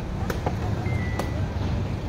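Sepak takraw ball being kicked: two sharp pops about a second apart, over a steady low rumble.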